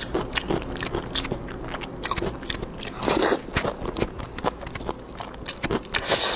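Close-miked eating sounds of braised pork skin rolls: the sticky, gelatinous skin being pulled apart by hand and chewed. Irregular wet clicks and smacks come every fraction of a second.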